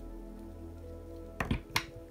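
Soft background music with steady held notes. About one and a half seconds in come a few short, sharp clicks from small kit parts being handled.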